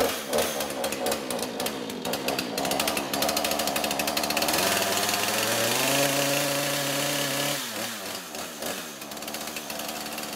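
Husqvarna two-stroke chainsaw running at idle, revved up about halfway through and held high for a couple of seconds, then dropping back to idle.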